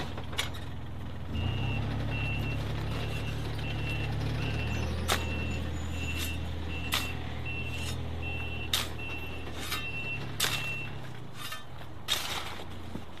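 A site dumper's diesel engine revs up about a second in and runs steadily as the machine reverses. Its reversing alarm beeps about twice a second until near the end. Sharp spade strikes and scrapes in soil come at irregular intervals.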